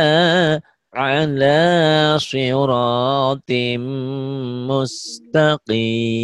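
A voice reciting Quranic Arabic in slow, chanted syllables, each held for about a second, practising the letter ʿain in 'ʿalā ṣirāṭim mustaqīm'.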